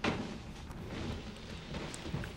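Soft rustling and faint thumps of a person getting up from a chair and moving across the room, with a small click near the end.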